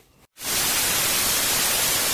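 Television static sound effect used as an edit transition: a loud, even white-noise hiss that starts abruptly about a third of a second in.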